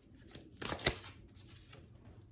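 Oracle cards being handled and drawn: a few soft card clicks and slides, the sharpest a little under a second in.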